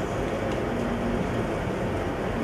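Steady background room noise, a continuous hum and hiss with no distinct event.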